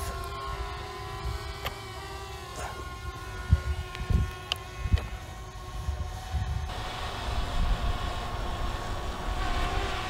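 Eachine EX4 drone's brushless motors and propellers humming as it flies overhead, a steady whine of several tones that wavers slightly, with wind gusting on the microphone.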